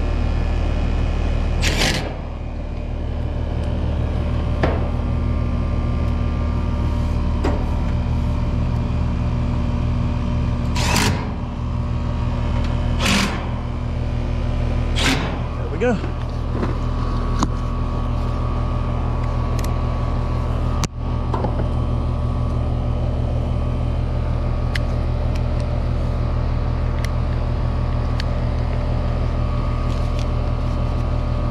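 Bryant outdoor unit running with a steady machine hum, its compressor and fan restarted on a fresh run capacitor. Over it, a cordless driver gives several short bursts, about 2, 11, 13 and 15 seconds in, as the service-panel screws go back in.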